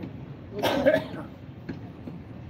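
A man coughing once into a cloth held to his mouth, about half a second in.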